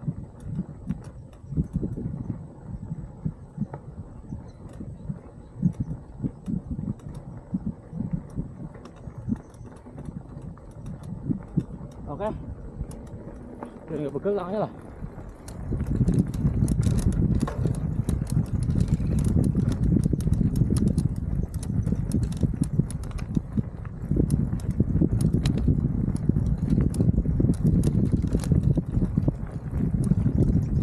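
Mountain bike riding over a rough dirt track: tyres rolling with scattered rattling clicks, under a low rumble of wind on the microphone. It gets clearly louder about halfway through.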